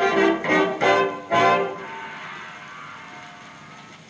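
Early-1930s dance-band recording played from a 78 rpm shellac disc on a record player: the brass band hits a few short chords, then a final chord about a second and a half in that dies away. After it only a faint hiss is left, slowly fading.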